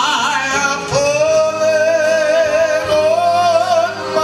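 A man's singing voice through a microphone: after a short sliding phrase, he holds one long note with a steady vibrato from about a second in.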